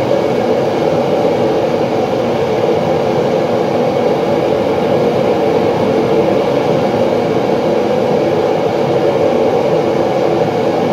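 Gas-fired foundry furnace burner running with a steady, very noisy roar while it melts cast iron in a graphite crucible.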